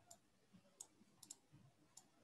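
Near silence broken by about five faint, sharp clicks spread unevenly over two seconds, from a computer keyboard and mouse being used to edit code.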